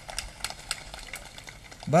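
Irregular light clicks and crackle over low background noise, about a dozen sharp ticks spread unevenly.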